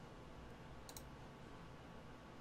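Near silence: room tone, with one short mouse click about a second in.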